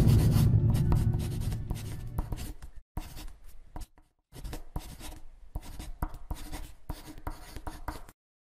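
Marker writing in quick scratchy strokes, in short runs with brief pauses around three and four seconds in. The low tail of a music sting fades out under it over the first two seconds or so.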